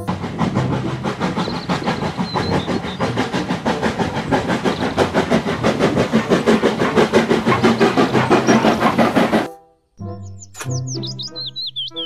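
Full-size steam locomotive dressed as Thomas the Tank Engine chuffing with a rapid, even beat that cuts off abruptly. After a brief silence, high chirping sounds follow near the end.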